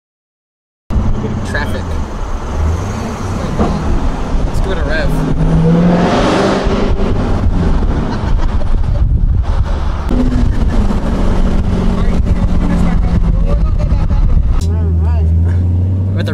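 Supercharged 6.2-litre V8 of a Dodge Hellcat heard from inside the cabin on the move, starting about a second in, with wind noise on the microphone. Near the end the engine note deepens and climbs as the car accelerates.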